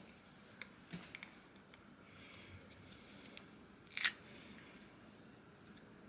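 Quiet handling of a two-part lure mould as it is prised open by hand: a few faint clicks and soft rubbing, with one louder click about four seconds in.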